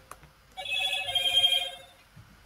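Electronic ringtone trilling rapidly on two close pitches, starting about half a second in and lasting about a second and a half.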